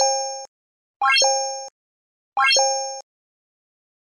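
Animated like-and-subscribe end-screen sound effects: three short electronic chimes about a second and a quarter apart. Each is a quick upward sweep that settles into a held chord and fades, one for each button as it pops up.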